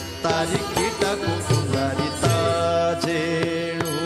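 Odissi classical dance music: a sung melodic line with instrumental accompaniment, punctuated by sharp mardala drum strokes.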